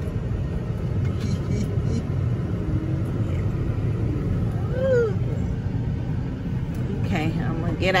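Steady low rumble of a GMC truck's engine and tyres, heard from inside the cab as it rolls into a parking space. A short rising-and-falling tone comes about five seconds in.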